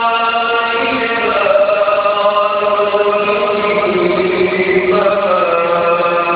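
A man reciting the Quran in the melodic, drawn-out tajweed style, holding long notes that slide from pitch to pitch within one unbroken phrase.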